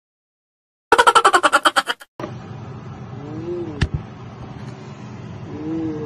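After a moment of dead silence, a loud, rapidly pulsing burst lasts about a second. A steady low hum follows, with one sharp clink and two short, soft voice sounds.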